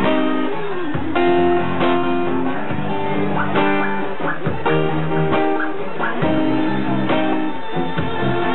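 Acoustic guitar strumming chords in a live set, a new chord struck about every second.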